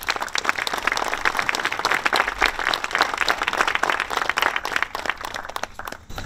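Audience applauding: many hands clapping together. It swells in the first second or so and thins out near the end.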